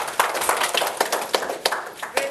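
Small audience applauding, individual hand claps distinct.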